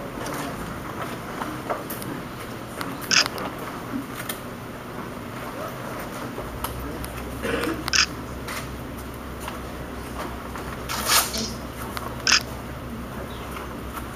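Riot-gear arm guard being strapped onto an officer's arm: straps pulled and fastened in four short, sharp bursts a few seconds apart, over a low room background.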